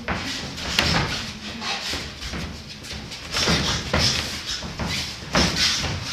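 Boxing-glove punches thudding as they land during sparring: sharp hits in quick pairs and clusters, the loudest just under a second in and another strong pair near the end.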